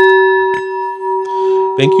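A metal singing bowl is struck with a wooden striker and rings on in a steady, low, sustained tone with several higher overtones. A lighter knock comes about half a second in.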